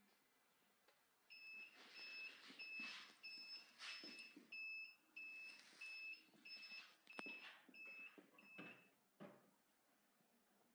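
Digital controller of a Heat Press MAX combo transfer press beeping repeatedly: about a dozen short, high beeps, a little over half a second apart, starting just over a second in. Faint handling noise and a couple of sharp clicks near the end.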